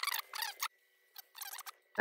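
Faint scratchy rubbing and squeaks of monofilament thread being wrapped over a hackle feather's tip at the hook of a fly in the vise, in a cluster at first and a few brief ones near the end.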